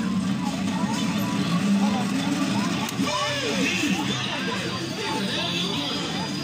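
Jolly Roger Speed Way carousel kiddie ride playing its racing-car song while it turns, mixed with arcade chatter and background noise.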